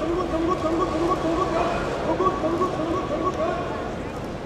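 A sumo referee (gyoji) calling "nokotta, nokotta" during a bout: a rapid string of short, high-pitched chanted calls, about three a second, that urge on the grappling wrestlers.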